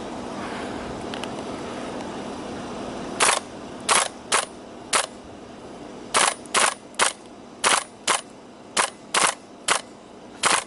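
ARMY G36C gas blowback airsoft rifle firing about a dozen sharp shots, starting about three seconds in, spaced irregularly about half a second apart with some in quick pairs. The rifle has a fault in its semi-auto catch, which the owner says makes it run on into automatic fire when set to single shot.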